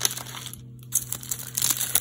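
Plastic packaging crinkling as it is handled, with a brief lull just after half a second before the crinkling starts again.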